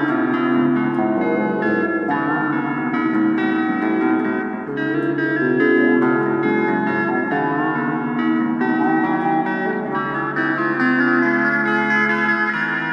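Blues-rock guitar instrumental: plucked guitar notes over a low chordal part, with a few notes gliding in pitch.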